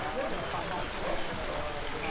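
Steady splashing of a swimming pool's waterfall and water jets, with faint voices of people chatting in the background.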